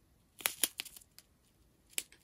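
Small clear plastic bags of square diamond-painting drills being handled: a short burst of crinkling and clicking about half a second in, and a single sharp click near the end.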